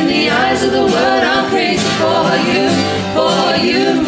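A man and two women singing a gospel worship song together in harmony, the melody moving through sustained sung phrases.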